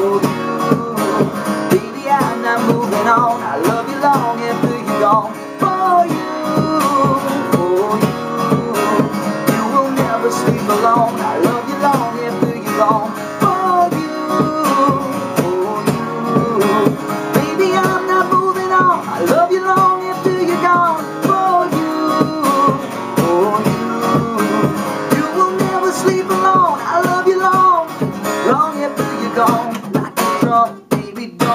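Tanglewood acoustic guitar strummed in a steady rhythm, with a man singing over it.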